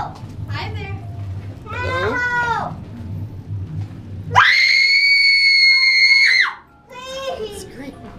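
High-pitched screaming and shrieks: short rising-and-falling cries in the first few seconds, then one loud scream held on a single high pitch for about two seconds, then more short shrieks near the end.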